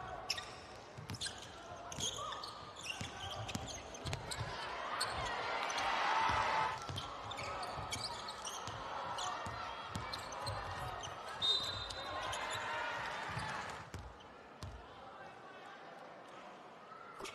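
A basketball bouncing on a hardwood court as it is dribbled during play, with voices in the background at times.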